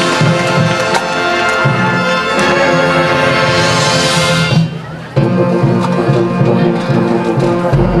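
High school marching band of brass, woodwinds and percussion playing a loud held chord that swells brighter and cuts off sharply about four and a half seconds in. After a brief lull the band comes back in with a lower, rhythmic passage.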